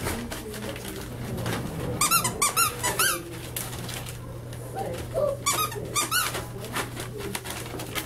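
Rubber squeaky toy squeezed in two quick runs: about five squeaks about two seconds in, then four more past the middle, each squeak rising and falling in pitch.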